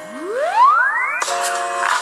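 Music played through the Takee 1 smartphone's rear loudspeaker. A single sweep rises steeply in pitch, then steady held notes come in sharply about a second in.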